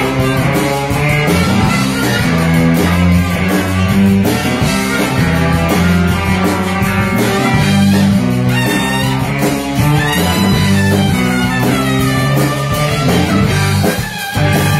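Live zydeco band playing loudly, with electric guitar and keyboard over drums and congas.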